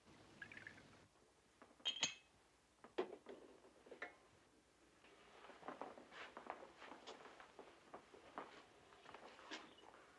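Faint clinks and taps of liqueur glasses being handled: one clearer clink with a short ring about two seconds in, then a few lighter taps and soft rustling.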